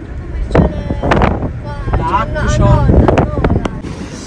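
Steady low road rumble inside a moving car's cabin, with voices heard over it partway through.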